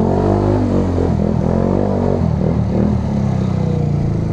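Sprint Max scooter's GY6 single-cylinder four-stroke engine running at low road speed, its revs rising and falling as the throttle is worked.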